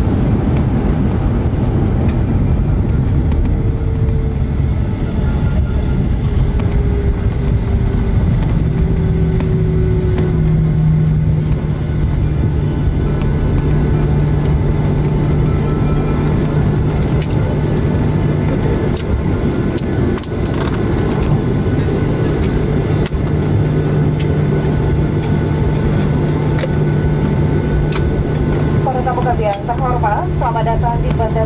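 Boeing 737-800 cabin noise during the landing rollout: a loud, steady rumble of the wheels on the runway and the CFM56 engines, with a whine that falls in pitch over the first ten seconds as the engines wind down. Small rattles and clicks from the cabin come in the second half.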